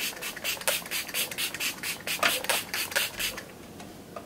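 Pixi Makeup Fixing Mist pump bottle spritzed at the face again and again, a quick run of short hissing sprays that stops about three and a half seconds in.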